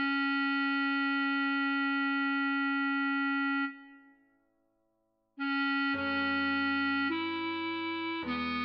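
A bass clarinet holds one long note for nearly four seconds, then falls silent. About a second and a half later it resumes with a few short notes, stepping up in pitch, over a lower accompaniment.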